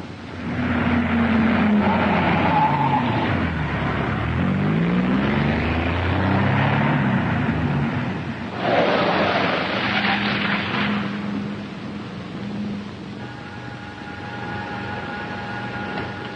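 Car engine sound effect on an old film soundtrack: the engine runs, its pitch falling and rising as it revs. A loud burst of rushing noise comes about eight and a half seconds in, and a steady hum holds in the last few seconds.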